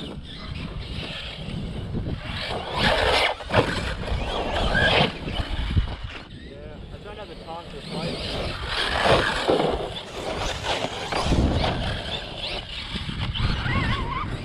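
1/8-scale Team Corally Kronos XTR RC car with a 6S brushless motor, driven over small dirt jumps: the motor and drivetrain whine in several throttle bursts, along with the tyres on dirt and grass.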